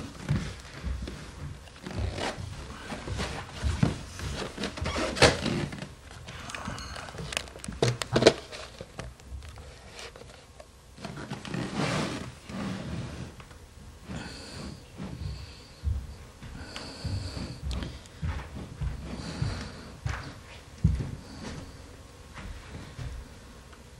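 Handling noise of a camcorder being moved and set up: a long, irregular run of knocks, clicks and rustles, loudest in the first half.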